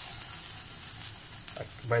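Cubes of queijo coalho cheese sizzling steadily as they brown in a hot cast-iron skillet.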